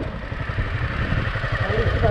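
Honda CBR250R single-cylinder motorcycle engine running steadily while riding, with wind and road noise rushing over the microphone.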